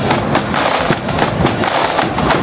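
Marching band side drums rattling out rapid snare strokes and rolls over a steady bass drum beat, a dense, continuous stream of sharp hits.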